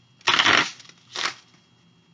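A deck of cards being shuffled by hand: two quick rounds of papery card noise, a longer one near the start and a short one just after a second in.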